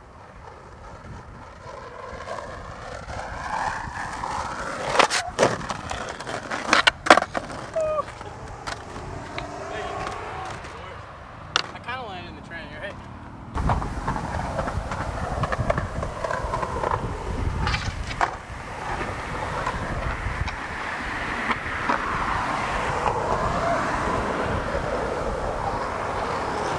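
Skateboard wheels rolling on pavement, growing louder as the board approaches, with sharp clacks of the board hitting the ground about five and seven seconds in. About halfway through the sound changes abruptly to a louder, steadier roll of skateboard wheels on asphalt.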